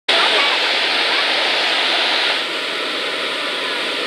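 Waterfall close by: a steady, dense rush of falling water, growing a little quieter about halfway through.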